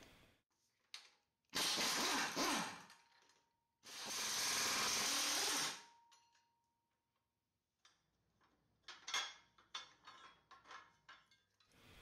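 A power wrench running in two short bursts, the second longer, undoing mounting bolts on the rear differential. A few light metallic clicks follow near the end.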